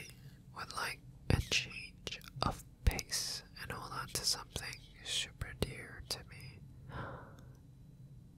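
A man whispering softly close to the microphone in short phrases, with several sharp short clicks in between.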